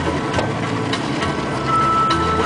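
Boat engine running steadily under a rush of wind and sea noise, with a few light clicks and music faintly underneath.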